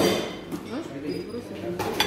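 A single clink of tableware right at the start, ringing briefly, over the murmur of a breakfast room. A voice comes in near the end.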